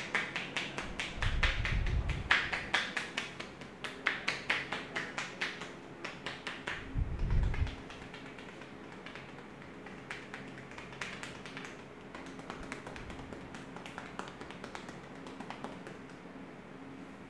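Hands tapping rapidly on a man's head in an Indian head massage: quick rhythmic pats and chops with palms pressed together and with loose fists. The taps are louder in the first half and lighter later, with two dull thumps, one near the start and one about seven seconds in.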